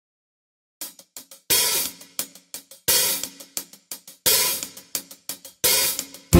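Hi-hat on a drum kit played alone as the song's intro: short closed ticks between longer open-hat washes that come about every second and a half, starting a little under a second in.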